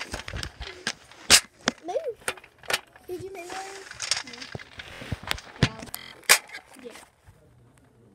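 Plastic checker pieces clicking and clacking on a checkerboard as they are picked up and moved, in short irregular knocks, with soft voices in between.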